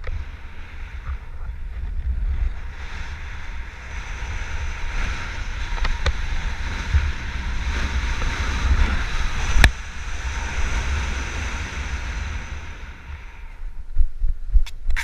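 Wind buffeting a helmet camera's microphone during a descent under an open BASE parachute canopy: a steady low rumble with a rushing hiss that swells through the middle and eases toward the end. A single sharp click comes a little before ten seconds in.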